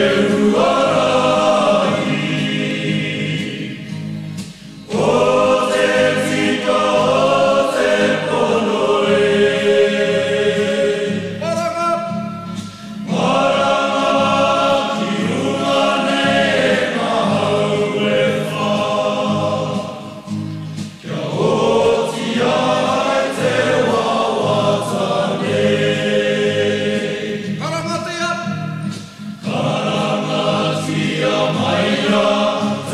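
A choir singing a song in Māori, in long phrases broken by short pauses about every eight seconds.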